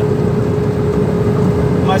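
Iveco heavy truck's diesel engine holding the loaded truck on the engine brake down a long grade, heard from inside the cab: a steady low rumble with a constant whine above it.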